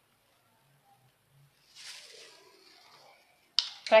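Near silence, broken about two seconds in by a brief, faint rustle of a plastic glove as the gloved hand handles sugar pearls. A woman starts speaking near the end.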